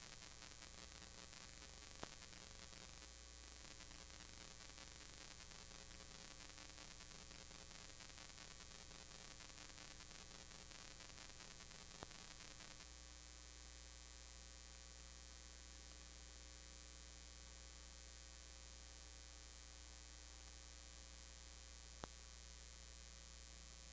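Near silence: a steady low electrical hum with hiss, and two faint clicks about ten seconds apart.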